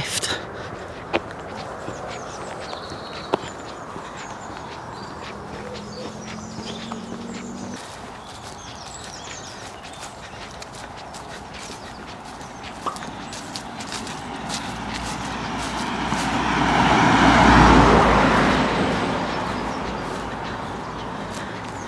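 Footsteps on a roadside pavement. Near the end a vehicle passes on the road, growing louder, at its loudest a couple of seconds before the end, then fading.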